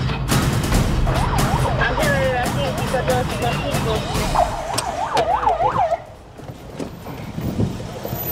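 Police car siren yelping in rapid up-and-down sweeps, starting about a second in and cutting off suddenly at about six seconds, after a quick run of sharp clicks at the start.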